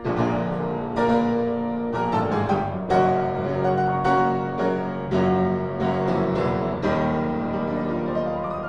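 A Steinway & Sons upright piano played by hand in its unrestored state, with chords and melody notes struck about once a second.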